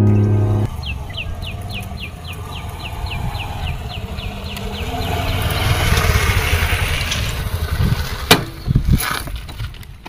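A Honda motorcycle's engine approaching along a dirt road, growing louder to about six seconds in and then easing off. Over it, a run of quick high falling chirps, about four a second, sounds for the first few seconds. Two sharp knocks come near the end.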